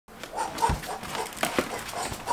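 Running shoes tossed about, landing with a few soft thuds and knocks, the strongest about two-thirds of a second in. Short, high yelp-like vocal sounds come in between the thuds.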